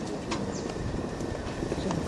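Birds calling from the treetops in short high chirps, over a steady low rumble.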